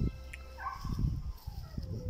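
A dog whining once, the call falling in pitch over about a second, over low rustling and thumps close to the microphone.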